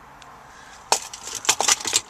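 A quick cluster of sharp clicks and taps, starting about a second in, over quiet room tone.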